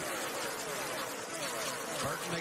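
A pack of NASCAR Truck Series race trucks with V8 engines passes close by at full speed. Several overlapping engine notes fall in pitch as each truck goes by.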